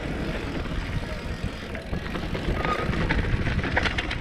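Mountain bike riding fast down a dirt trail: a steady low rumble of tyres on dirt and wind on the microphone, with the bike rattling and clicking now and then over the bumps.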